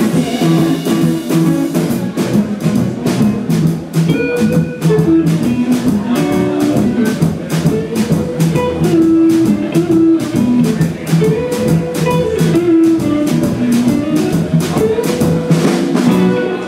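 Live band with two electric guitars, electric bass and drum kit playing an instrumental blues-rock passage over a steady drum beat, with no vocals.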